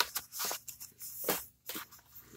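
Paper rustling in several short strokes as the pages of a handmade paper junk journal are handled and closed.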